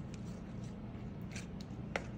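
Wooden spatula spreading a thick, creamy vegetable mixture in an aluminium foil pan: faint squishing and scraping with a few soft ticks, one sharper near the end.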